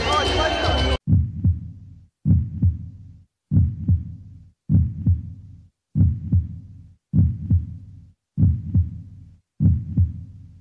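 About a second of music and crowd noise that cuts off abruptly, then a heartbeat sound effect: low double thumps, lub-dub, repeating steadily about once every 1.2 seconds, eight times.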